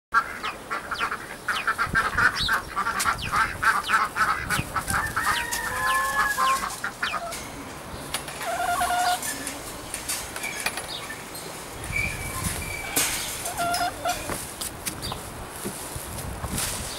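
Chickens clucking and calling, in a quick run of calls for the first seven seconds or so, then in scattered single calls.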